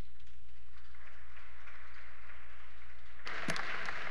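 Scattered applause, a soft patter of clapping that swells and gets denser about three seconds in, over a steady low electrical hum.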